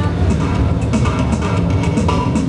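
Steel pans played live over an amplified backing track with a steady drum beat and bass, in an upbeat Caribbean groove.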